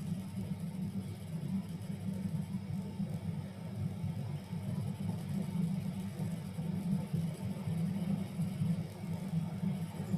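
Steady low rumble of background noise picked up by an open microphone, with no distinct events.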